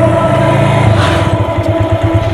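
Motorcycle engines running in stalled traffic: a low, rapidly pulsing engine note that grows stronger about a second in.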